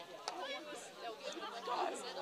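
Faint, distant voices calling and chattering across the field hockey pitch.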